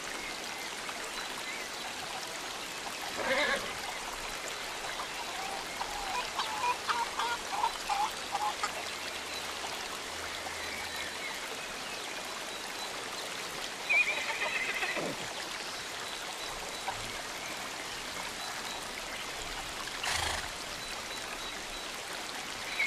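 Steady trickle of running water under scattered farm animal and poultry calls: one call about three seconds in, a quick run of short calls around seven seconds, a higher call near fourteen seconds that slides down, and a brief burst near twenty seconds.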